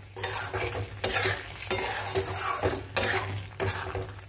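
Metal spatula scraping and stirring thick red chili-garlic chutney in a metal kadai, a stroke about every second, with the paste frying and sizzling in its oil. The oil has separated out, the sign that the chutney is fully cooked.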